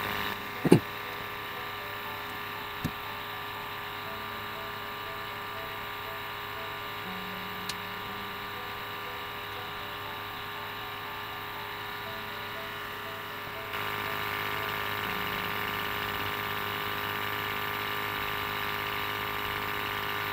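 Small built-in sampling pump of an UltraRAE 3000 photoionisation detector running steadily as it draws air through a benzene sampling tube, a steady hum of several tones. The hum gets slightly louder about 14 s in, and there is a single knock just under a second in.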